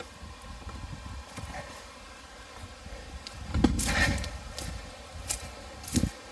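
Footsteps and rustling through long dry grass and weeds, with rumbling handling noise on the phone's microphone. A louder brushing rustle comes a little past halfway.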